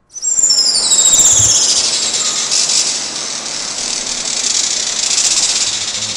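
Juan Fernandez firecrown hummingbird calling, played back from a video recording: loud, high-pitched calls that open with a few quick falling glides and then run on as a dense, rapid high twittering.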